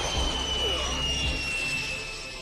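Anime blast sound effect dying away: a low rumble under a thin high whine that slides slowly down in pitch, fading out near the end.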